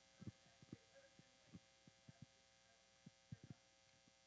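Near silence: a steady electrical hum from the audio system, with a scattering of short, soft low thumps.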